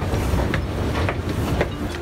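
Low, loud rumble of underground-station machinery with a few sharp clicks, starting suddenly.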